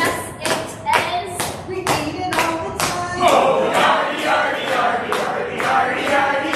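Hands clapping in a steady rhythm, about two claps a second, while a group of voices sings along.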